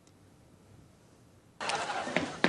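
Near silence, then about one and a half seconds in a projected sitcom clip's soundtrack cuts in abruptly over the hall's loudspeakers: a loud noisy wash with a few sharp knocks.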